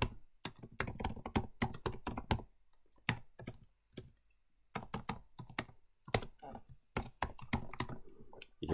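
Typing on a computer keyboard: runs of quick keystrokes, with a pause of a couple of seconds in the middle broken by one or two single keys.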